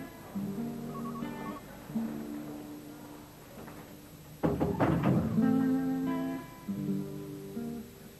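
Background music: a guitar playing slow chords, each strummed and left to ring, with a louder flurry of strums about halfway through.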